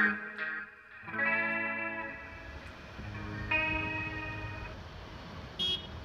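Electric guitar with chorus and distortion effects playing the song's closing chords: three chords struck a second or two apart, each left ringing to fade out. A low steady rumble sits underneath from about two seconds in, with a short high ring near the end.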